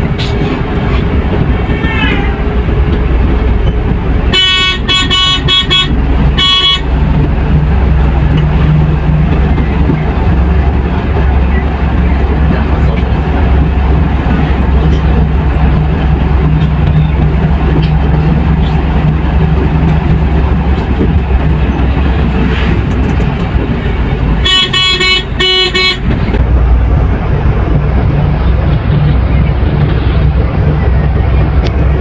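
Volvo coach's diesel engine running with a steady low drone as the bus cruises along the highway, heard from inside the cabin. A horn sounds in quick repeated toots twice, about four seconds in and again near the end.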